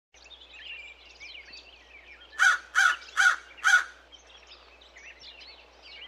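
A crow cawing four times in quick, even succession, loud and harsh, a little under half a second apart, starting a little before the middle. Faint high chirping of small birds runs underneath.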